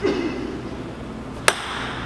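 A ping-pong ball striking a hard surface once, a single sharp click about one and a half seconds in, over quiet room background.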